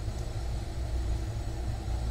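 A steady low rumble in the background, with no other sound standing out.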